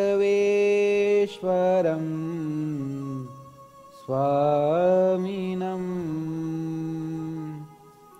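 A man chanting Sanskrit invocation verses to a slow melody, in two long phrases of drawn-out held notes with a short breath between them about three to four seconds in.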